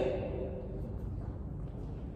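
Quiet room rumble with a few faint taps of heeled dance shoes stepping on a wooden floor.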